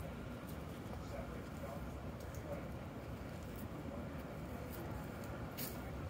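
Street ambience: a steady low rumble with faint voices in the background and a few light ticks. The sharpest tick comes near the end.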